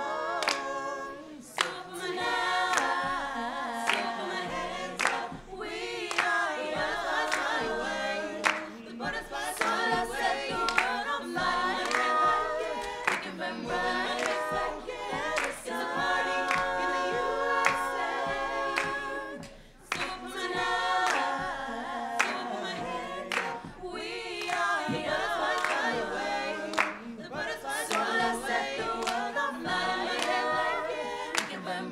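A group of voices singing a cappella, with sharp claps landing roughly once a second. The singing drops away briefly about twenty seconds in, then resumes.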